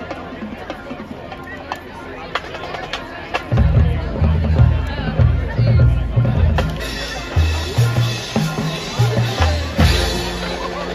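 A marching band playing live on the field, with drums throughout. About three and a half seconds in, a loud low bass line enters in stepped notes under the beat.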